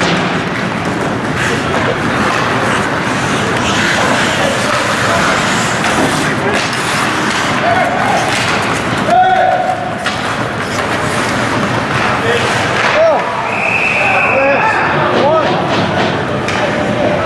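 Ice hockey game noise in an arena: a steady din of spectators with shouting voices and scattered thuds and cracks of players and sticks against the boards. A referee's whistle blows for about a second near the end.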